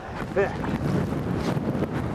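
Wind buffeting the microphone: a steady rushing noise, with one short spoken word near the start.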